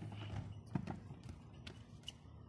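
BMX bike knocking and clattering on a concrete skate-park ledge as the rider stops and steps off: several sharp knocks, the loudest about three-quarters of a second in.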